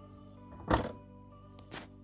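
Background music playing, with a Dodge Magnum's tailgate shutting with one loud thunk about three-quarters of a second in and a lighter knock near the end.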